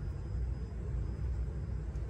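Quiet, steady low background rumble with no distinct events.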